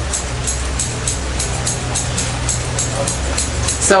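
Background music with a steady beat: a low bass line under crisp high ticks about four times a second.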